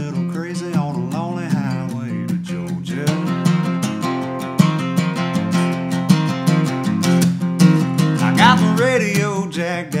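Acoustic guitar strummed steadily in a country song. A sung line trails off in the first couple of seconds, and a brief vocal phrase comes back near the end.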